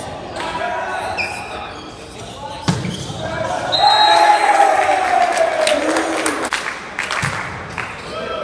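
Volleyball rally in an echoing gymnasium: two sharp ball impacts with a thud, nearly three seconds and a little over seven seconds in, amid players' shouts, with one long loud call in the middle.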